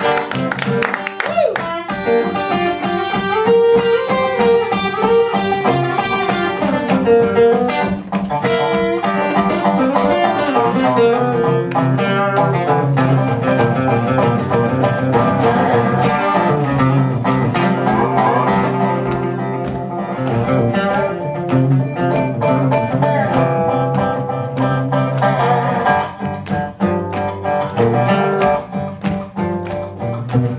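Acoustic country music without singing: guitar and dobro playing an instrumental passage.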